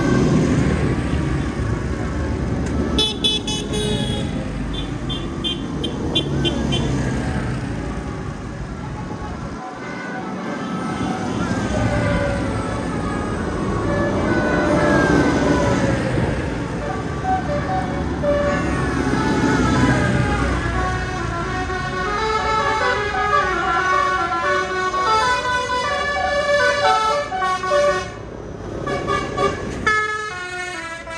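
Tractors driving past one after another on a wet road, their diesel engines rising and falling as each one passes, with tyre hiss. Horns and siren-like tones sound over them, thickest in the last several seconds.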